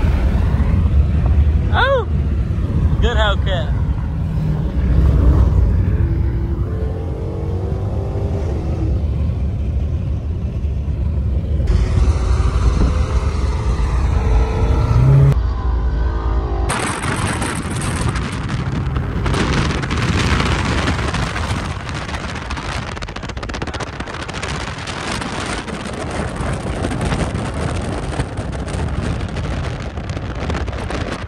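Car engines running with people's voices around them. A little past halfway the sound cuts to a steady, hissing rush.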